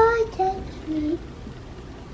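A young child singing three short notes, each lower than the last, then stopping a little past a second in.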